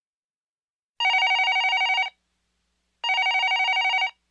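Telephone ringing twice for an incoming call, each ring about a second long with a fast flutter, the second ring starting two seconds after the first.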